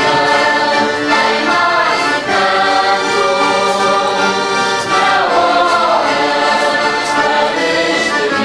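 Live Azorean carnival bailinho music: accordion and guitars playing together, with voices singing over them.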